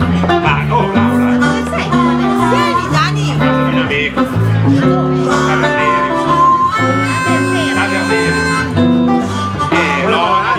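Blues harmonica played cupped against a microphone, bending notes up and down, over acoustic guitar and bass accompaniment; near the end it holds a long chord.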